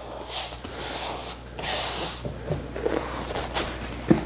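Hands rubbing and smoothing a vinyl upholstery cover over a foam bench pad, giving soft swishing strokes: a short one near the start and a longer one about one and a half seconds in, with lighter rubbing after.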